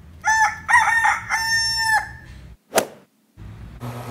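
Rooster crowing once: a few short notes, then one long held note. Near the end a sharp click is followed by a brief gap, then a steady low hum.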